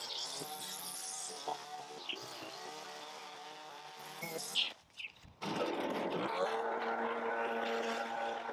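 Gas string trimmer's small engine running steadily as it edges grass along a concrete driveway. About five seconds in the sound breaks off briefly, then a louder, steady engine takes over: a gas leaf blower running.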